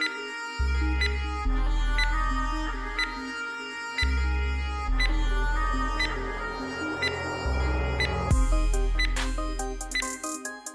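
Background music with a deep bass line and sustained notes over a steady beat; about eight seconds in, a fast high ticking pattern joins.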